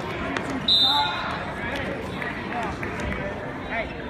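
Wrestling referee's whistle: one short, high blast about a second in, over background crowd voices.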